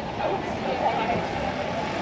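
Street ambience: passersby talking over steady traffic noise.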